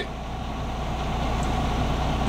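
Semi truck's diesel engine idling, a steady low hum heard inside the cab.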